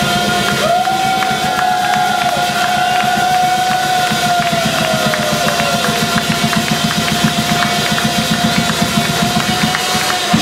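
Live swing jazz band of piano, double bass, saxophone and drum kit playing a song's closing bars: one long held note sits over busy, driving drums and cymbals.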